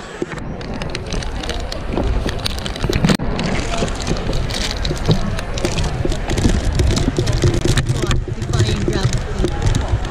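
Indistinct chatter of a seated theatre audience, with rubbing and knocking from a hand-held phone microphone.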